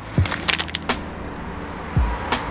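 Steel parts of a harmonic balancer puller kit, the yoke plate and its bolts, clinking together as they are handled: a quick run of light metal clinks in the first second.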